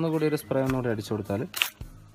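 A person's voice talking, in continuous narration.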